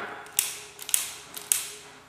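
Handheld lighter being struck several times, sharp clicks about half a second apart with a short hiss after each, lit with a small flame by the end.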